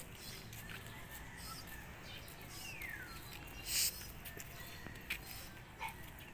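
Outdoor birds calling: a short call that falls in pitch about three seconds in, then a brief loud sound just after it, with a few short chirps later.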